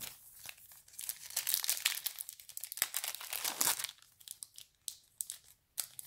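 Foil trading-card pack wrapper crinkling as it is handled and opened, dense for about four seconds, then only a few light clicks.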